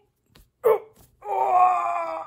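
A voice gives a short cry, then a long wavering wail or moan lasting about a second, loud and held on one pitch.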